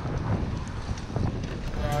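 Wind rushing over the microphone of a handlebar-mounted camera on a moving bicycle, a steady low rumble with road noise. Music comes in right at the end.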